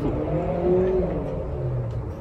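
A motor vehicle engine running, a steady low hum with a few held tones that shift in pitch partway through.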